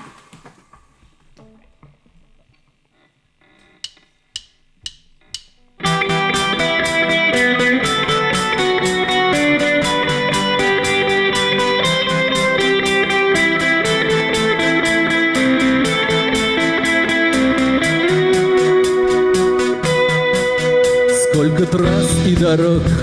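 After a few quiet seconds, four evenly spaced clicks count in a live band. The band then starts an instrumental intro on acoustic and electric guitars, bass guitar and drum kit, playing at a steady beat.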